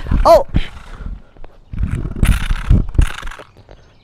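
A short startled "oh", then loud scraping and rustling for about a second and a half as a dropped Deity BP-TX wireless transmitter hits and drags across a concrete driveway. The noise fades about three seconds in.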